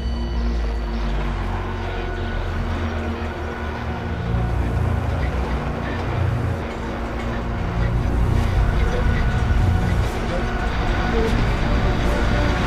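Dark, suspenseful trailer score: a low rumbling drone under several long held tones, swelling louder about two-thirds of the way through.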